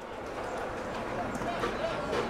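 Steady open-air background noise with faint, distant shouting voices, from the second second on.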